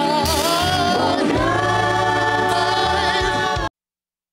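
Gospel vocal group singing with a live band, several voices together, settling into a long held chord that cuts off abruptly shortly before the end.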